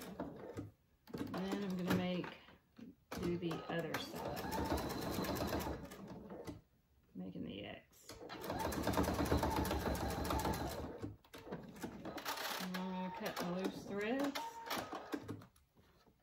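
Electric sewing machine stitching in four separate runs with short pauses between them, the needle clattering rapidly while running and stopping as the strap is turned. It is sewing an X of stitches through the folded layers of a cotton fabric leash handle.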